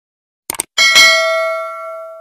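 Two quick mouse-click sound effects, then a single notification-bell ding that rings on and fades over about a second and a half: the sound effect of a subscribe button's bell being clicked.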